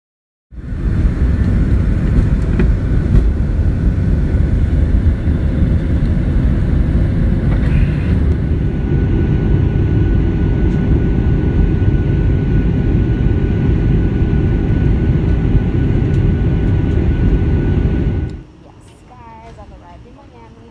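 Airliner cabin noise heard from a window seat in flight: a loud, steady roar of engines and airflow, strongest in the low end, starting about half a second in. Near the end it cuts off abruptly to a much quieter background with faint voices.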